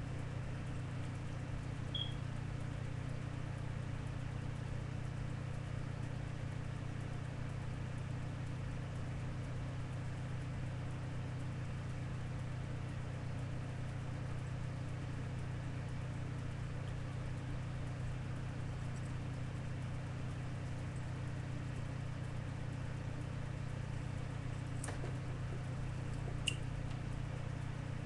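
Steady low hum with a faint hiss, unchanging throughout, and a few faint clicks near the end.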